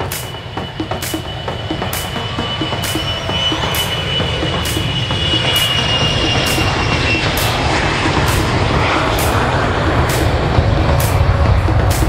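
A wide-body jet airliner's engines on the runway: a steady high whine over a low rumble that grows steadily louder as the engines spool up. Background music with a steady beat plays over it.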